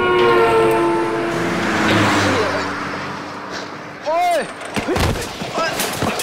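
A car horn sounding for about a second, its pitch sliding slightly down, over a rush of noise from the approaching car. From about four seconds in a man shouts, with a heavy thump near five seconds in.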